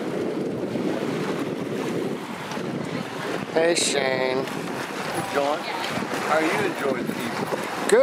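Wind on the microphone over small waves lapping on a lake shore, with a steady rush. A short voice cuts in about halfway through, and fainter voices follow.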